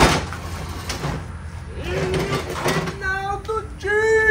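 A sharp knock as a folding table is set down, then a cat meowing several times in the second half, calling for the meat on the grill.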